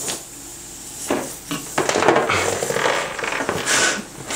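A helium balloon's rubber neck worked at the mouth: rubbing, squeaking and small knocks of the balloon against lips and fingers, with a bright breathy hiss of air near the end.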